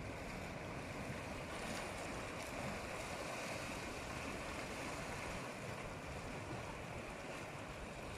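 Small sea waves washing steadily against shoreline rocks, a continuous rushing with some wind on the microphone.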